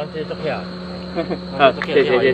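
Steady, unbroken high-pitched trill of night insects, under a few quiet fragments of speech.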